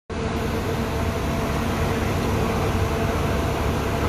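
Coach bus idling: a steady engine rumble with a constant hum over it.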